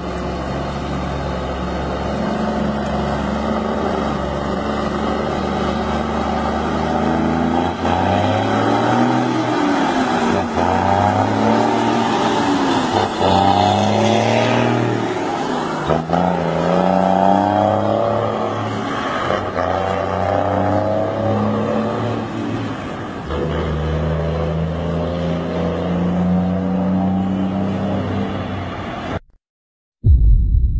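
Heavy diesel truck engine with a straight-through open exhaust, pulling away and climbing through the gears. After a steady low note for the first several seconds, the engine note rises and drops back again at each of several upshifts, then holds steady near the end.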